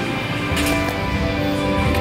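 Worship band rehearsal music with steady held chords, loud enough to carry into the backstage hallway.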